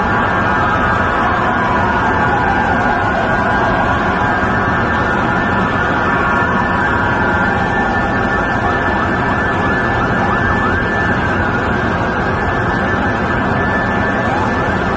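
Emergency vehicle sirens wailing over dense street noise: a slow falling wail in the first few seconds, then a run of quick rising yelps about two-thirds of the way through.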